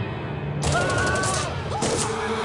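Rapid automatic gunfire starts a little over half a second in, with a voice crying out over it, and a second short burst comes near the end. A film score plays underneath.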